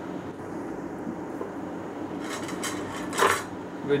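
Small parts being handled on a table: a few faint clicks, then one short clatter a little over three seconds in, as a small push switch and tool are put down.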